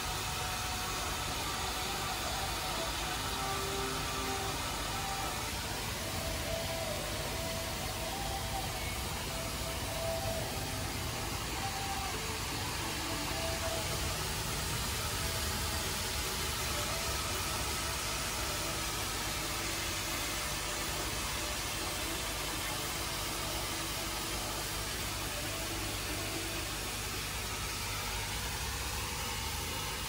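A steady rushing noise that holds level throughout, with faint high tones in the first dozen seconds or so.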